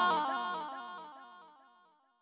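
A sung vocal line held out under a repeating echo effect, each repeat dipping in pitch. It dies away steadily and is gone about a second and a half in.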